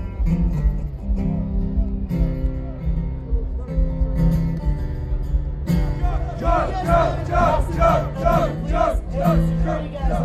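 Two acoustic guitars strummed live through a festival PA. A little past halfway, voices join in a rhythmic chant of short repeated syllables, about two a second, over the guitars.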